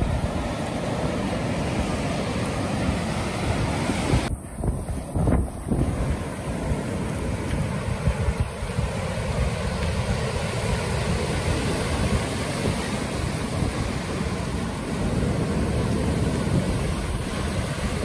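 Wind buffeting the microphone over the steady wash of breaking ocean surf, with a short dip in the hiss about four seconds in.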